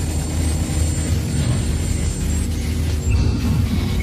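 Documentary background score: a steady, low rumbling drone, with a faint high tone coming in about three seconds in.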